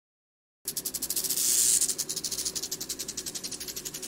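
Rattlesnake rattle sound effect: a fast, continuous buzzing rattle of rapid clicks that starts just under a second in, over a faint low steady hum.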